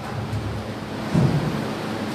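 Steady hiss of room and amplification noise through the microphone, with a brief low sound a little after a second in.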